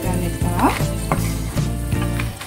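Dried red chillies frying in hot oil in a non-stick pan, a steady sizzle with a few sharp crackles and clicks.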